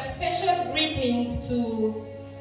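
A woman speaking into a handheld microphone.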